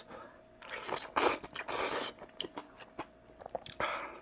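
Close-miked eating: a mouthful of kimchi ramen being bitten and chewed, loudest in the middle second or two, with a few sharp wet clicks near the end.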